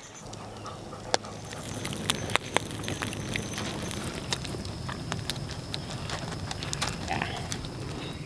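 Wood campfire crackling, with irregular sharp pops and snaps.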